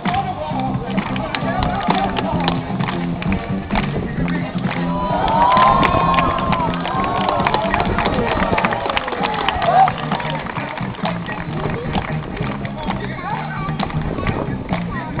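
Music with a repeating bass line playing for a street performance, under the chatter of a watching crowd and scattered short sharp clicks. Voices and calls from the crowd grow louder around the middle.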